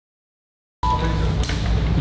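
Dead silence from a dropout in the live stream's audio, then the sound cuts back in abruptly just under a second in, with a low hum and room noise.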